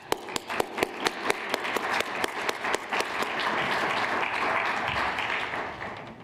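Audience applauding: a few separate claps at first, thickening into steady applause that fades near the end.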